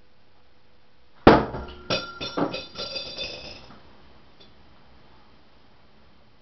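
A metal shuriken strikes a door with a sharp knock about a second in, then falls and clatters several times on the floor with a ringing metallic clink, dying away within a few seconds.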